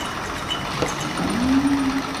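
Small alcohol-heated Stirling engine running, a steady mechanical whir. About halfway through, a hum rises in pitch and then holds.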